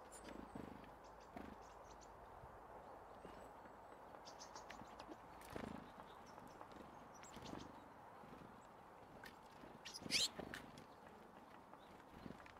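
Blue tits and great tits feeding in a seed dish: scattered soft taps of beaks pecking and feet landing, with thin high calls and a short, louder high call about ten seconds in.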